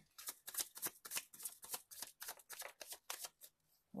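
A tarot deck being shuffled by hand: a rapid run of card flicks that stops shortly before the end.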